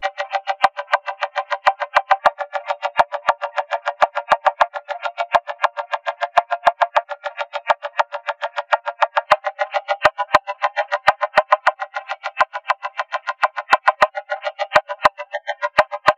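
Synth audio resynthesised through the TugSpekt spectral (FFT) image plugin, its step sequencer chopping the sound into rapid, even sixteenth-note pulses, with everything below about 500 Hz cut away. Thin clicks are scattered between the pulses, and the pattern thins out in places in the second half as the image's contrast and threshold settings are changed.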